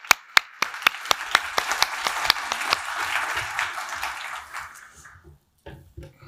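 Audience applauding: sharp separate claps that thicken into a full round of applause, which fades out about five seconds in.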